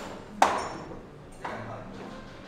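Two sharp clicks of pool balls knocking together: the first loud, with a brief high ring, and a softer one about a second later.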